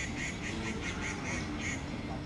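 A bird calling in a quick run of short, high notes, about four a second, that stops shortly before the end. A steady low hum runs underneath.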